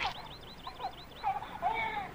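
Infant vocalizing: short high babbling and cooing sounds, the last one longer and held. A quick run of very high, rapid chirps comes in the first second.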